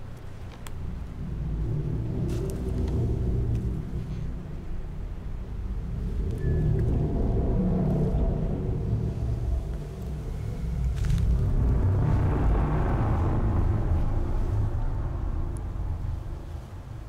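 A deep, low rumble that swells and fades in slow waves, loudest about halfway through and again near the end.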